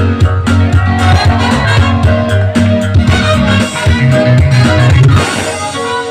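A live dance band playing an upbeat Latin-flavoured number: a pulsing bass line under keyboards and a horn section, loud and dense. The low bass drops away about five seconds in.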